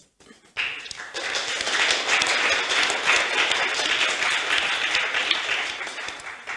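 Audience applauding, starting suddenly about half a second in and holding steady.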